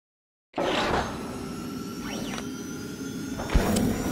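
Electronic intro logo sting starting after half a second of silence: a sustained synthetic sound bed with a pitch sweeping up and back down midway, and a sharp low hit about three and a half seconds in.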